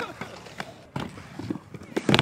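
Scattered light clacks of inline skates' hard boots and frames knocking on a skatepark ramp, with faint voices behind.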